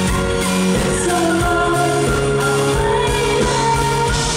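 A female singer singing live into a microphone over a live pop band with electric guitar and drums, holding long notes.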